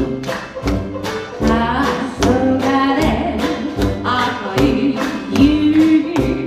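A woman singing a vocal line to a Dixieland jazz band's accompaniment, with a steady beat of low strokes about two or three times a second under the melody.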